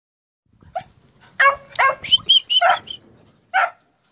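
Puppies barking and yipping: a quick run of about seven short, high-pitched calls, bunched together in the middle and ending with a single yip near the end.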